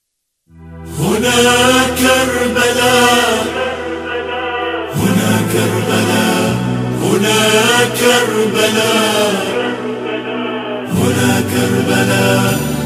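Arabic devotional chant (nasheed) sung over a steady low drone. It begins about half a second in, after silence, in phrases that rise and fall.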